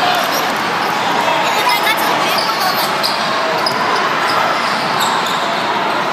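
A basketball bouncing on an indoor court over the steady hubbub of voices in a large hall.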